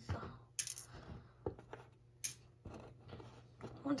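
Small pieces of toy-train coal clicking and clattering on a plywood table as spilled coal is handled, with four or five sharp light clicks spread irregularly.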